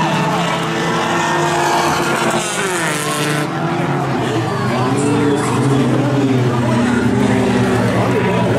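Engines of several tuner-class dirt-track race cars running on the oval, their pitches rising and falling as they throttle on and off. One revs up sharply about three seconds in.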